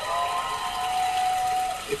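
Game-show studio audience cheering, with long high-pitched screams held over it. One scream fades after about a second while a second one carries on until near the end.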